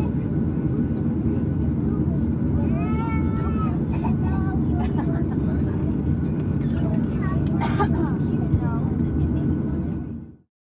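Steady low rumble inside a Boeing 737 cabin as it taxis with its jet engines at idle, with passengers talking faintly over it.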